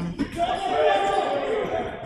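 Rubber dodgeballs thudding on a hardwood gym floor and against players, echoing in a large hall, over faint background voices.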